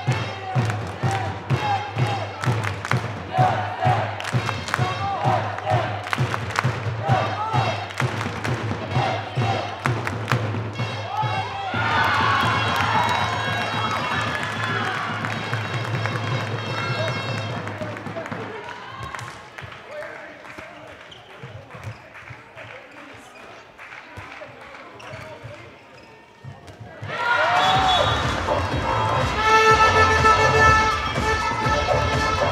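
A handball bounced repeatedly on a sports hall floor during play, with voices and music in the hall. The bouncing is densest in the first third; louder voices or music come in about twelve seconds in and again near the end.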